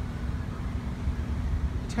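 Steady low rumble of road traffic and outdoor background noise, with a faint steady hum underneath.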